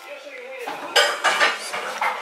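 Dishes and cutlery clinking and clattering as someone handles them at a kitchen counter. The clatter starts a little over half a second in and is loudest about a second in, after a short wavering tone at the start.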